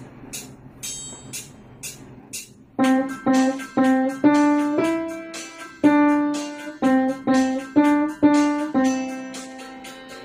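A child playing a simple melody on an upright acoustic piano over a backing track. The track's high percussive ticks count in for the first few seconds, then the piano enters about three seconds in with notes about two a second, some held longer.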